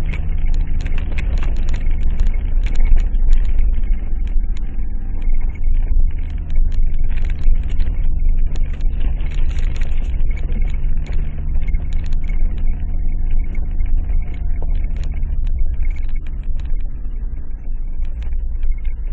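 Vehicle driving along a bumpy gravel track, heard from inside the cabin: the engine runs steadily under a low road rumble, with frequent knocks and rattles from the bumps.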